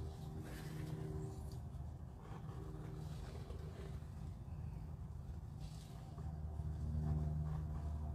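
A low, steady mechanical hum that swells and fades a few times.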